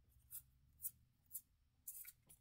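Soft swishes of Pokémon trading cards sliding against each other as a hand flips through a stack, four short swipes about half a second apart.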